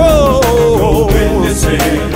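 Black gospel quartet music: a singer holds one long, wavering note that slides down in pitch over a band of guitar, keyboard, bass and drums.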